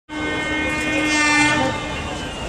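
Electric locomotive horn of an Indian Railways WAP-4 sounding one long, steady blast as the train approaches, stopping shortly before the end, over the low rumble of the train.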